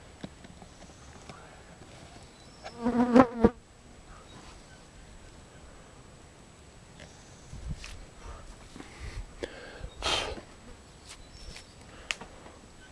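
A flying insect buzzing close past the microphone for under a second about three seconds in, its pitch wavering as it passes, followed by a sharp click. Softer rustles and a short breathy hiss come later, around seven to eleven seconds in.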